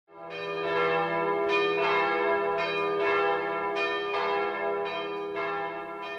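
Bells ringing: a steady series of struck notes in pairs, about ten strokes, each note ringing on under the next.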